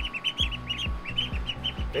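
Young poultry peeping, quick high chirps several times a second, over background music with a steady deep beat.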